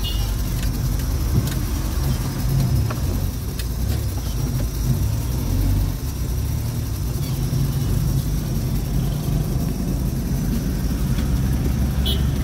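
A car driving along, heard from inside the cabin: a steady low rumble of engine and road noise.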